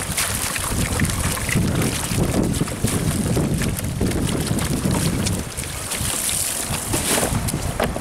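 Water splashing and pouring off a nylon cast net as it is hauled out of a pond, with wind buffeting the microphone.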